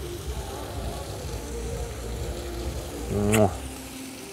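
Low steady outdoor hum with faint wavering background tones, and a brief voiced murmur from a person close to the microphone a little over three seconds in.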